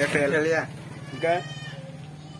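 Men's voices talking close to a phone microphone, then about a second and a quarter in a short, high vocal call. A steady low hum runs underneath throughout.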